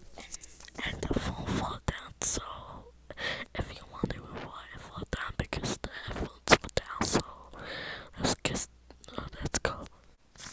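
A girl whispering close into a wired earphone's microphone, broken up by frequent sharp clicks.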